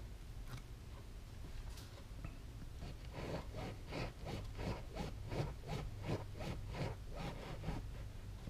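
Serrated knife sawing up and down through a motorcycle seat's vinyl cover and foam, a steady scraping at about four strokes a second that starts about three seconds in.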